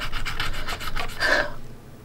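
Pencil scribbling on paper, rapid back-and-forth strokes colouring in a circle on a binder page, fading out near the end.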